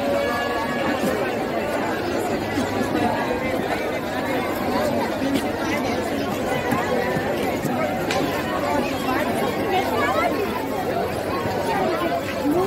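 Crowd chatter: many people talking at once in a steady babble of overlapping voices.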